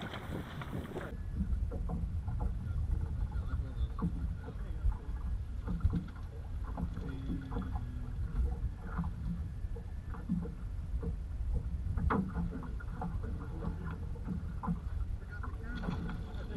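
A small boat drifting on a choppy sea: a steady low rumble of wind and water around the hull, with water slapping against it in scattered short knocks.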